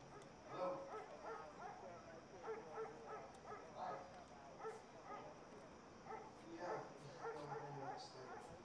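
Muffled, indistinct voice of a man talking on the phone, heard from outside through a closed glass door.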